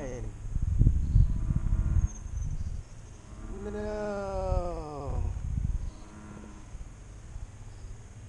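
A man's long, falling groan of dismay, about three and a half seconds in, as a fish he had on comes off. Before it, low rumbling thumps of wind and handling on the microphone.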